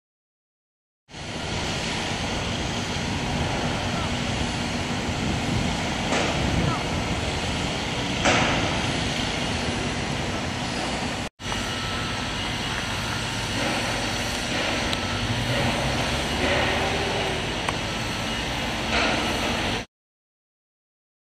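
Construction-site noise: a steady din of machinery with a few scattered clanks and distant voices. It drops out for an instant near the middle.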